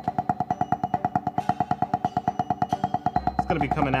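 Wooden drumsticks striking a drum practice pad in an even stream of sixteenth-note strokes, about eight a second, each a short knock with the same ringing pitch. A backing track plays underneath.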